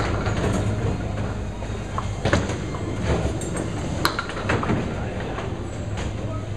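Candlepin bowling: balls rolling along wooden lanes in a steady low rumble, broken by several sharp clacks of balls striking pins.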